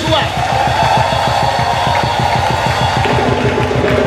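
Live church worship music with a fast, steady drum beat and a long held note over it, from just after the start until about three seconds in.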